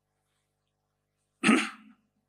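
Near silence, then a single sharp cough into a stage microphone about one and a half seconds in.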